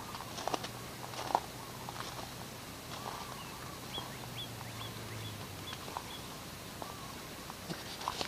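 Faint bird chirping: a quick run of about six short, high, rising chirps in the middle, among scattered soft clicks and rustles, over a faint low hum that stops a little after five seconds in.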